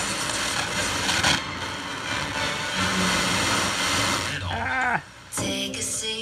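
Fisher FM-100-B vacuum-tube FM tuner giving out a steady rush of interstation static while its dial is turned between stations. About four and a half seconds in, the hiss gives way to a station's broadcast voice.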